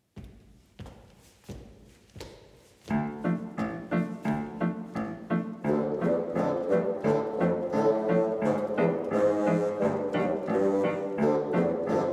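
Bassoon ensemble playing with piano: a few soft piano notes open, then about three seconds in the bassoons come in much louder with a rhythmic tune of short, detached notes.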